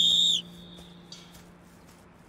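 A short, loud, steady blast on a sports whistle, cutting off about half a second in.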